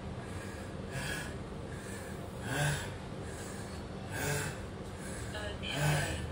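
A man breathing hard to catch his breath between leg exercises: four heavy breaths, about one every second and a half, the second and fourth the loudest.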